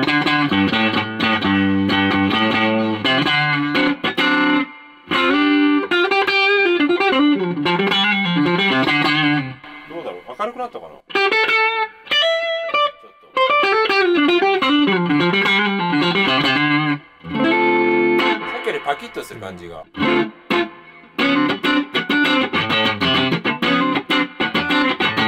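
Stratocaster-style electric guitar played through an amplifier, notes and chords in phrases with short breaks between them. The signal runs through an Allies VEMURAM guitar cable with all-phosphor-bronze plugs, played to hear that cable's tone.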